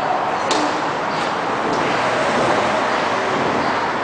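A tennis serve: the racket strikes the ball with a sharp pop about half a second in, followed by fainter knocks a little later, over the steady noise of an indoor tennis hall.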